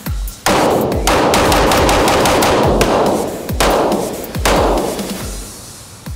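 A rapid string of 9mm pistol shots from a CZ Tactical Sport 2 Orange on an indoor range, mixed with electronic music that has a heavy, regular beat. The shots and the music swell together, loudest from about half a second in, and fade out before the end.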